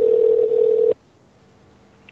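Steady single-pitched telephone line tone heard over the phone line, cutting off abruptly about a second in.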